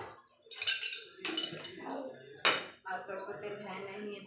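A spoon and spice jars clattering and knocking against containers while spices are spooned out for a pickle, with three sharp clatters over the first three seconds.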